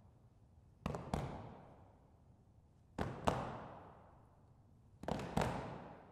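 Body percussion from a group of singers patting their chests in unison: a pair of thumps about a third of a second apart, repeated three times at two-second intervals, each ringing on in a reverberant church.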